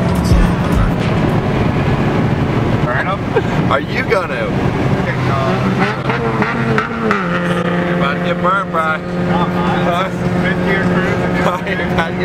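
Car engine and tyre noise heard from inside the cabin while driving on a highway: a steady drone whose pitch steps down slightly about seven seconds in.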